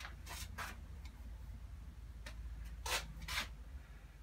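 Watercolour brush rubbing on a surface in short scrubbing strokes: two near the start and two more about three seconds in.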